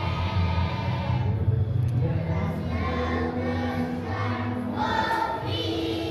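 A children's choir singing together, the sustained sung notes changing pitch every second or so.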